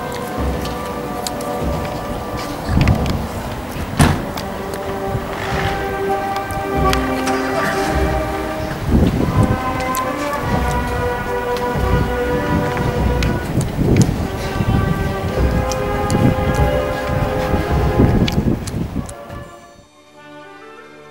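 A brass band playing slow held notes outdoors, heard through a heavy, crackling rumble of noise on the microphone. The sound fades out near the end.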